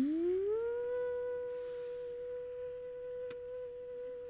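A man's voice imitating an elevator going up: a hummed tone that glides up in pitch through the first second, then holds one steady high note.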